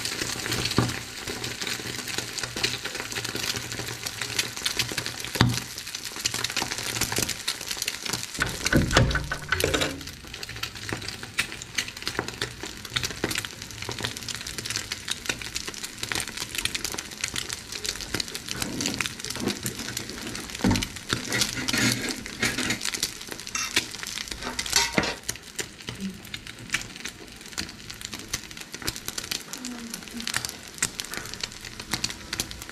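Egg omelette frying in oil in a frying pan, a steady crackling sizzle that eases a little after about ten seconds, with a few louder knocks along the way.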